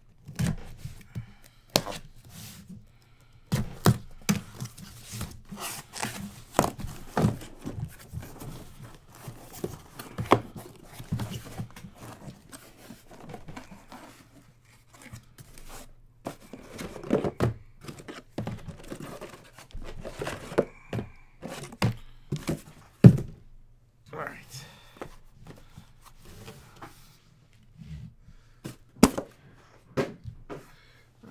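Box cutter slicing the packing tape on a cardboard shipping case, then the cardboard being handled and shrink-wrapped hobby boxes set down and stacked: a run of tearing, rustling and thunks, the loudest thunk about three-quarters of the way through.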